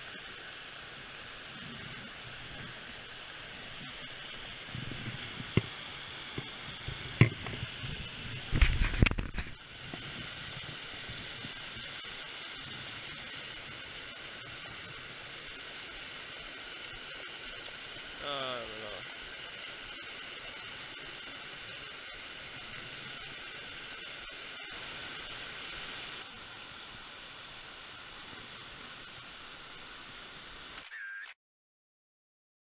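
Steady rushing of a mountain stream and a small waterfall. From about five to nine seconds in there is a cluster of sharp knocks and thuds from handling close to the microphone as a trout is landed.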